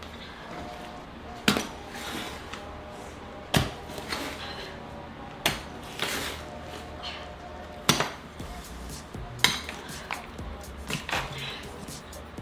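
Pickaxe blows striking broken concrete and packed dirt in a floor trench, six sharp hits about two seconds apart, with lighter knocks of rubble in between.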